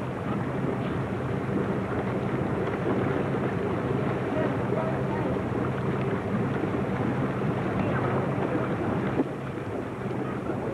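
Motorboat engine idling with a steady low hum, wind noise on the microphone over it, and a single sharp knock near the end.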